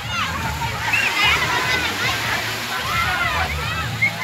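Crowd of children shouting and calling out over the steady wash and splashing of water in a wave pool.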